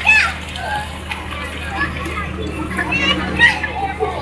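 Children's voices, chatter and a few high-pitched shouts from kids playing on an inflatable slide, over a steady low hum.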